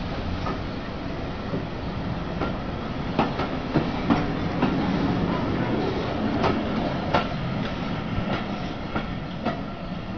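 Passenger coaches of a train rolling past with a steady rumble, their wheels clicking over the rail joints at irregular intervals.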